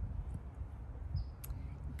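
Pause in speech with only low outdoor background rumble, a faint short high chirp about a second in and a single light click just after.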